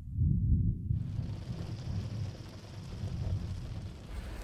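A deep, uneven rumble, loudest in the first second, with a steady hiss joining about a second in.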